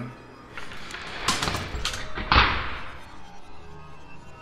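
A quick flurry of knocking and rustling, ending in a heavy thump about two and a half seconds in, over a faint background music score.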